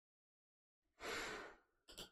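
A man's single sigh about a second in, a short breathy exhale of about half a second that fades away, followed by a faint click.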